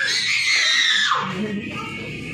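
A child's high-pitched scream, held for about a second, rising and then falling away before it breaks off.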